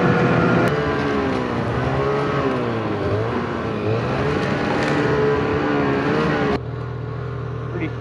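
Snowmobile engine running under throttle, its pitch rising and falling as the throttle is worked. About six and a half seconds in the sound drops suddenly to a lower, steadier engine drone.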